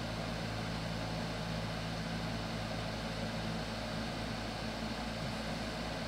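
Steady low hum with an even hiss under it, unchanging throughout: the recording's background noise with no one speaking.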